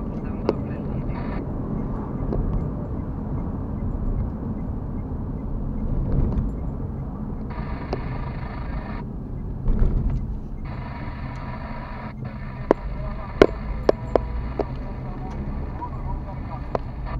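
Steady road and engine noise heard inside a car cabin while driving at highway speed. Near the end there is a run of sharp, irregular clicks.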